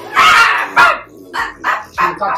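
Baby girl squealing loudly in excitement: a long high squeal, then a short one, followed by softer baby noises.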